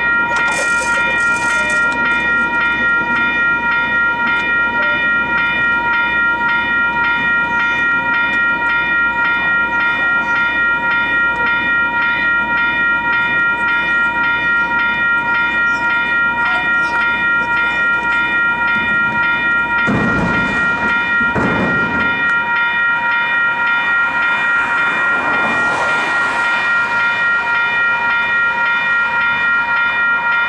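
Western Cullen Hayes electronic level-crossing bells ringing continuously: a steady, rapidly repeating multi-tone ding that marks the crossing's warning cycle. About two-thirds of the way in there are two low thumps, followed shortly by a brief hiss.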